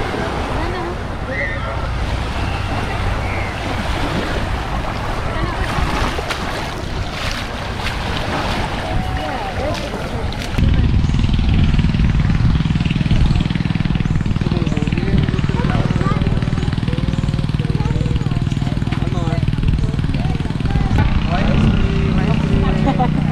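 Open beach ambience: wind on the microphone and breaking surf, with voices in the background. About halfway through, an abrupt change to a louder, steady low engine drone, with voices continuing faintly.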